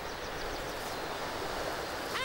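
Steady, even outdoor rushing noise, the natural ambience of wind and surf around an albatross nesting colony, with no distinct calls.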